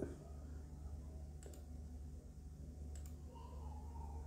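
Two computer mouse clicks, about a second and a half apart, over a low steady electrical hum.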